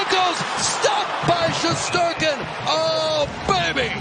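Excited play-by-play commentary of an ice hockey game, with one long drawn-out call about three seconds in, over a steady arena din and a few sharp knocks.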